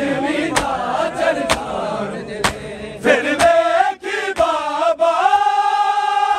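A noha is sung live by a group of male reciters and mourners, with the crowd's open-handed chest-beating (matam) landing in time about once a second. In the second half the beats give way to long, held sung notes.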